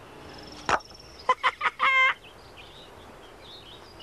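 Hens clucking in a farmyard: a few short clucks about a second in, then one longer squawk near the middle, over faint outdoor background.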